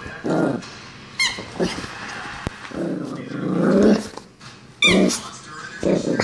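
A small dog growling and giving short barks while playing, with one long growl that rises in pitch about three seconds in.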